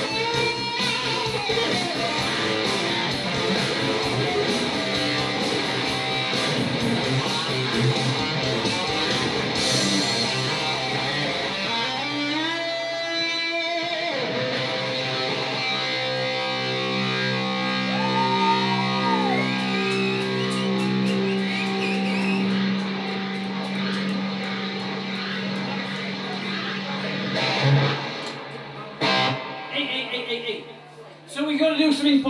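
Live rock music: electric guitar played through an amplifier over a backing track. Partway through there is a sweeping slide in pitch, then long held notes with a bend, and the music stops shortly before the end.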